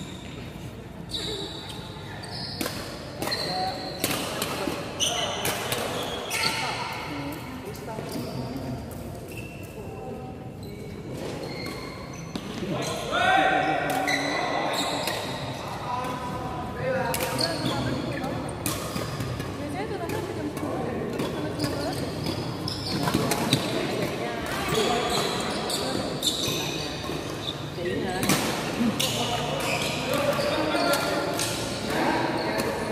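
Badminton rackets striking shuttlecocks in rallies, sharp pops at irregular intervals throughout, with players' voices and calls in between.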